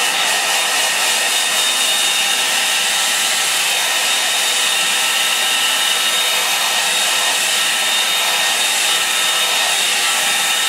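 Handheld hair dryer running steadily, a loud even rush of air with a thin steady high whine, unchanged in pitch and level throughout.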